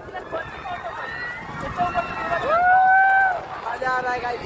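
Voices calling out in drawn-out cries from riders on a moving fairground ride, with one long held cry about two and a half seconds in.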